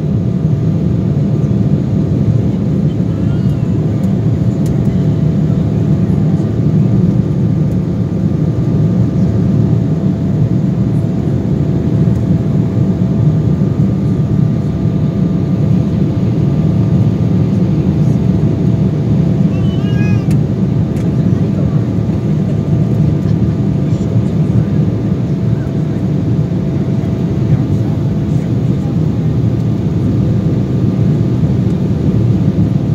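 Steady cabin noise of an Embraer E-175 jet climbing after take-off: a deep rumble of its GE CF34 turbofans and rushing air, with a couple of steady engine tones running through it.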